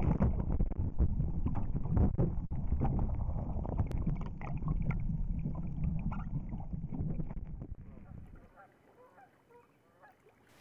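Water sloshing and splashing around a camera held at and under the lake surface, a rough rumble with many small knocks that fades away to near quiet about eight seconds in.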